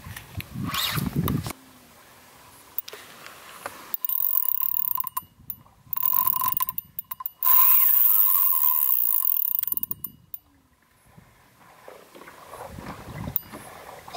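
Spinning reel's drag buzzing in three bursts as a hooked tarpon takes line. The last burst is the longest, about three seconds.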